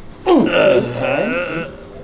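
A man's drawn-out groan, about a second and a half long, that falls steeply in pitch and then wavers, as pressure is put on his back during a manual spinal adjustment.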